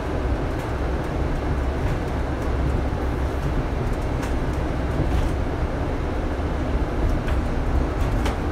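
Double-decker bus running along the road, heard from the upper deck: a steady low engine and road rumble with occasional light rattles and ticks from the bodywork.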